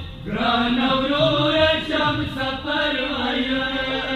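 A voice chanting a Pashto noha, a Shia mourning lament, in a melodic line that rises and falls, with a brief break just after the start.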